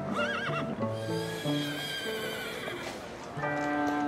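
A horse whinnies twice over background music: a short wavering call just after the start, then a longer one lasting about two seconds.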